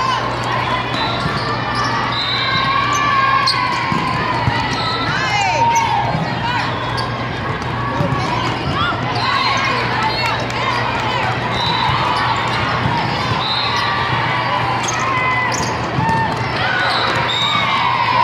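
Indoor volleyball play in a busy sports hall: sneakers squeaking on the court, sharp knocks of the ball being hit, and many voices in the background over a steady low hum.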